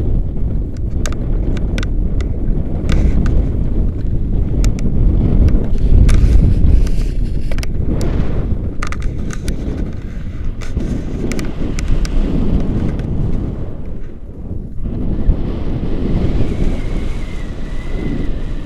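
Airflow buffeting the camera microphone during a paraglider flight: a loud, rough wind rumble that rises and falls, with scattered light clicks.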